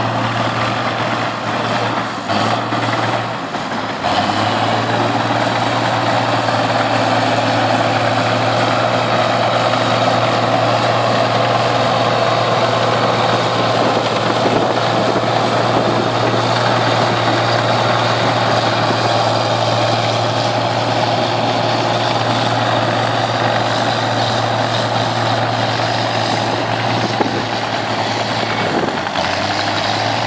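International crawler dozer's engine running steadily under load as it pushes earth with its blade. It has a steady low engine note that gets louder about four seconds in and drops off briefly near the end.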